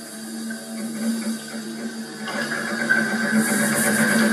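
Experimental sound piece played live on turntables and a laptop: a steady low drone with a brighter, grainy upper layer swelling in about two seconds in.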